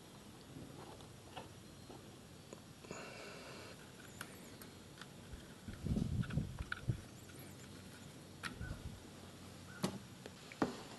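Hand work with a metal tool on the exposed clutch hub of a Kawasaki Bayou 400 engine: scattered faint metallic clicks and knocks. A few dull thumps come about six to seven seconds in, the loudest part.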